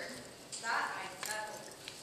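Faint, indistinct voices in a room, with a few light knocks or clicks.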